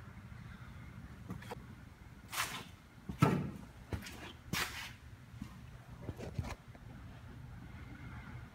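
Steady low hum with about five short scuffs and knocks, the loudest about three seconds in. This fits a handheld phone being carried and handled around the truck.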